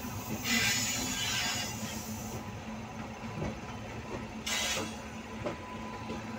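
Passenger train running slowly on parallel tracks, heard from inside a coach: a steady rumble of wheels on rail with a low hum. Two brief hissing surges come through, one near the start and one past the middle.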